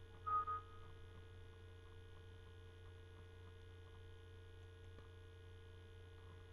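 Steady low electrical hum with faint room noise, broken near the start by a brief high-pitched tone lasting about half a second.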